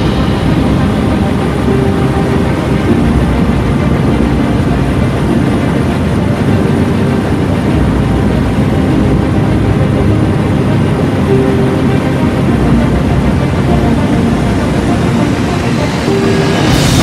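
Steady, loud drone of a light aircraft's engine and propeller in flight, heard from inside its cabin.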